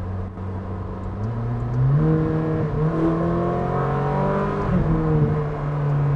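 Ferrari 458 Speciale's naturally aspirated V8 accelerating under way. It pulls up in pitch from about a second in, dips once near the middle, then holds a steady higher note.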